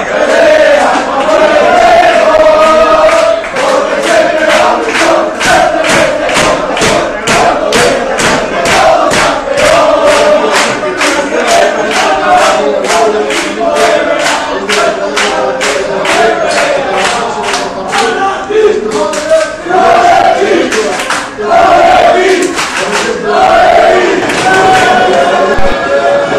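A crowd of football supporters chanting and singing together, loud, with rhythmic hand claps about two to three a second; the clapping stops a few seconds before the end while the singing goes on.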